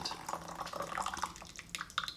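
Tea trickling steadily in a thin stream from a porcelain gaiwan into a glass pitcher, poured straight in with no strainer.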